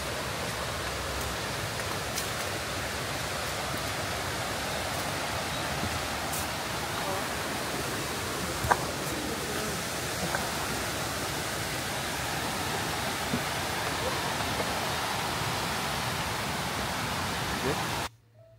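Steady rushing of a nearby waterfall, an even roar of falling water at a constant level, with one sharp click about nine seconds in.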